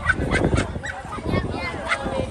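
Outdoor crowd of voices: overlapping chatter and short exclamations from people mingling close by.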